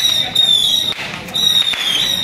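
Firecrackers crackling in a dense string, with a shrill high whistle sounding twice over them, each blast about half a second long and dipping slightly in pitch.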